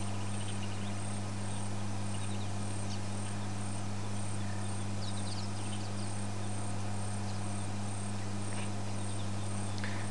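Insects chirping steadily, a thin high pulse repeating a few times a second, over a constant low hum.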